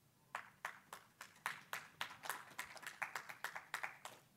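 Audience applauding at the end of a talk: faint, separate hand claps that start a moment in and die away at the end.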